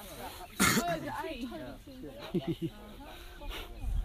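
Background voices of people talking, with a sudden loud burst of noise, like a cough, about half a second in and a fainter one near the end.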